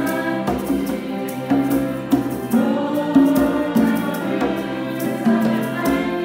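Live school ensemble performing a song in Luxembourgish: several voices singing into microphones over violins, piano and conga drums, with a steady beat struck about twice a second.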